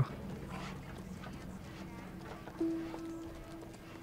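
Quiet soundtrack of a drama series: soft orchestral score with a held note coming in about two and a half seconds in, over faint horse hoofbeats.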